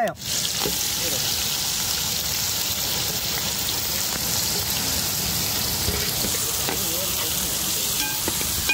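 Sliced onions going into hot oil with whole spices in a large metal pot, frying with a steady, fairly loud sizzling hiss that starts as they hit the oil.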